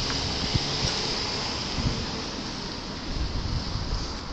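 Outdoor street noise: a steady hiss with irregular low rumbles from traffic at an intersection, and wind buffeting the camera microphone in a few low thumps.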